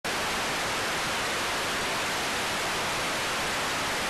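Steady, even hiss of television static, held at a constant level with no other sound in it.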